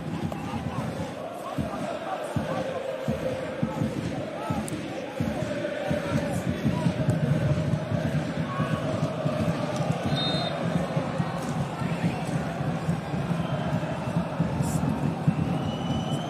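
Football stadium crowd noise: fans singing and chanting throughout, with the thud of the ball being kicked on the pitch now and then.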